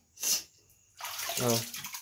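Water splashing into the pool of a stone-lined well: a short splash about a quarter of a second in, then a thin stream of water pouring steadily into the water from about a second in.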